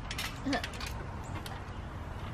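Light clicks and creaks of a backyard trampoline's mat and springs as children shift on it, with a short child's vocal sound about half a second in.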